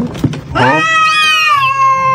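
Domestic cat giving one long meow that starts about half a second in, rises and then holds a steady pitch.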